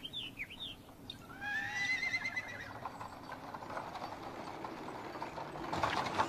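A few quick falling bird chirps, then a horse whinnying about a second in, followed by a steady clip-clop of hooves that grows louder near the end.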